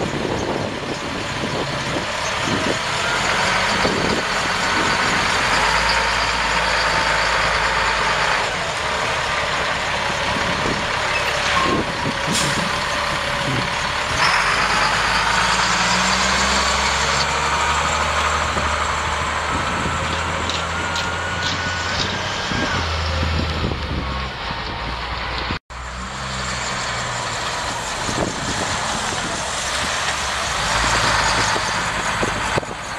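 2001 Sterling LT8500 dump truck's Caterpillar 3126 inline-six turbo diesel running as the truck drives slowly by. The engine note rises and falls with a whine that glides in pitch. There is a short sharp hiss near the middle, and the sound cuts out for an instant about three-quarters of the way through.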